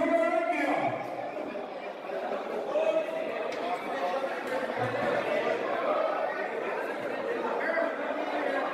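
Indistinct chatter of several people talking in a large hall, with no one voice clear.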